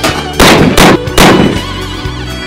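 Three revolver shots in quick succession, about 0.4 s apart, over the instrumental music of a country song.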